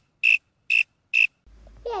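Cricket chirping sound effect, single clean chirps at about two a second, the stock gag for an awkward silence after an unanswered question. A voice cuts in near the end.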